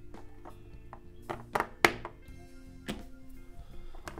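Plastic LEGO bricks clicking and tapping as they are handled and pressed together on a tabletop: a handful of sharp clicks, the loudest about two seconds in, over steady background music.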